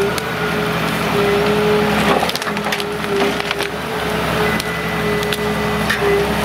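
Ecolog 574E forwarder's diesel engine and crane hydraulics running steadily while the grapple loads branchy conifer tops onto the bunk, the branches crackling and snapping throughout, with a burst of snapping about two seconds in.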